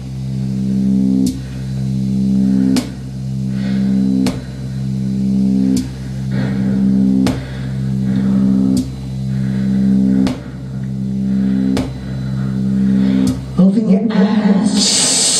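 Looped electronic noise music: a steady low, buzzing drone with a sharp click about every second and a half, swelling in loudness between clicks. The drone cuts off just before the end.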